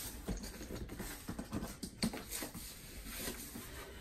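Cardboard mattress box being opened: irregular light taps, scrapes and rustles as the top flaps are cut free and pulled open.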